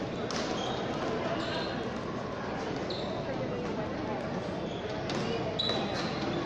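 A frontball rally: the ball smacks against the front wall and court floor several times, each hit echoing in the hall, with short high shoe squeaks on the court floor. A steady murmur of crowd chatter runs under it.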